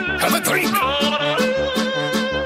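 UK happy hardcore dance music at a fast tempo, about three beats a second, with a pulsing bass between the kicks and a vocal line over the synths.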